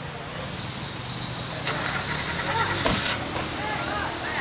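A motor vehicle engine idling steadily, with voices in the background and two sharp clicks about a second apart near the middle.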